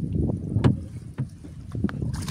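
Wind buffeting the microphone over a low rumble, with a few sharp drips and clicks as a wet fishing net is hauled hand over hand into a small boat.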